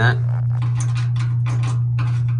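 A thin metal probe scraping and clicking against the rusted-through steel of a porcelain-enamelled steel bathtub, several short scratchy clicks, over a steady low hum. The steel around the hole is rotten right through.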